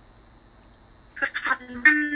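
Quiet room tone, then, about a second in, a voice comes in over the video-call connection, thin and cut off above the mid-range like a telephone line.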